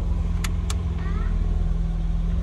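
FSO 125p 1500's four-cylinder engine idling steadily, heard from inside the cabin, with two sharp clicks about half a second in from dashboard switches being pressed.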